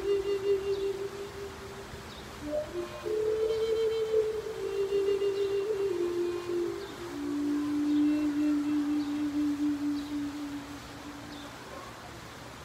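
Flute playing a slow melody of long held low notes, with a short pause about two seconds in; the phrase then steps downward and ends on a long low note that fades out near the end.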